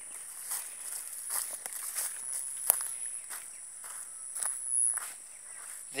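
Footsteps through grass and undergrowth, irregular steps over several seconds, heard over a steady high-pitched drone.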